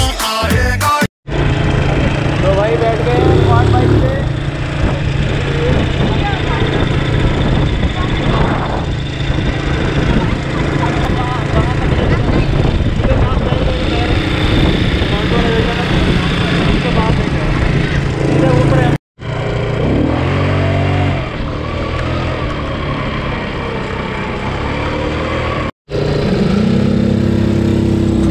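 Quad bike engines running, with people's voices over them, in three stretches; the sound drops out for a moment between them.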